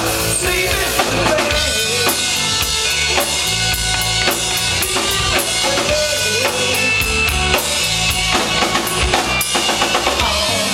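Live rock band playing through the PA: a drum kit keeps a steady beat of kick and snare under electric bass and electric guitar.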